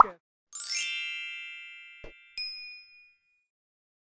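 Electronic logo-sting chime: a shimmering, ringing chord swells in about half a second in and slowly fades, followed by a soft thump and a single short, bright ding that dies away about three seconds in.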